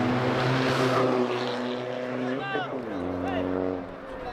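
An engine drones steadily with an even pitch, which drops near the end. A voice calls out briefly over it.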